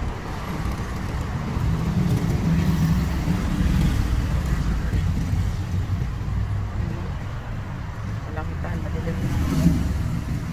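Low, steady rumble of a car's engine and road noise heard from inside the cabin while it creeps along in slow traffic, with a brief bump near the end.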